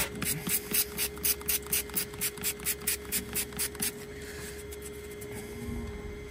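Quick, even rubbing strokes, about four a second for close to four seconds, as a cow's hoof is scrubbed clean with a hand-held scrubber and wash.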